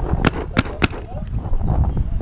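Paintball markers firing: about four sharp pops in quick succession in the first second, then a faint fifth.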